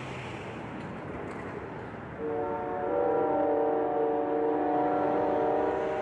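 Steady outdoor street noise, then about two seconds in a train horn sounds one long chord of several notes, held for about four seconds.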